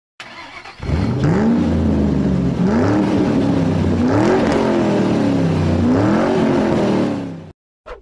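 Car engine revving four times, each rev rising and falling in pitch over a low idle, then cutting off suddenly near the end.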